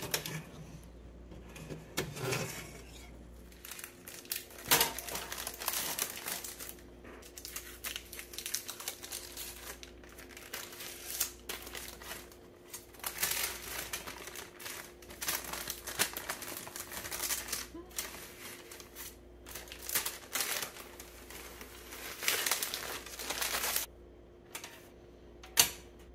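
Parchment baking paper crinkling and rustling in irregular spells as it is peeled off a loaf of bread, over a faint steady hum, with a sharp knock near the end.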